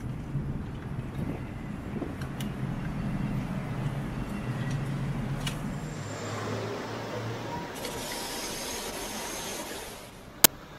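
Road vehicles running close by, a steady low engine hum over traffic rumble. A steady hiss joins in for the last two seconds or so.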